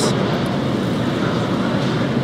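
Flour tortilla frying in a skillet of hot oil, a steady sizzle as it is held folded with tongs to shape a taco shell.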